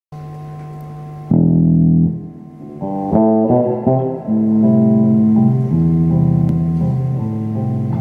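Electric bass guitar playing jazz improvisation: a quiet held note, a loud chord about a second in, then a run of plucked notes and chords.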